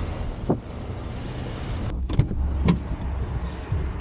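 A car running, heard from outside at the open window as a steady low drone, with a click about half a second in and a few knocks around two seconds in.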